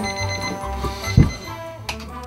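Alarm clock going off with background music over it, and a thump about a second in.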